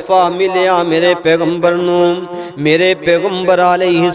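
A man's voice chanting in a drawn-out, melodic style through a microphone, with long held notes and gliding pitch.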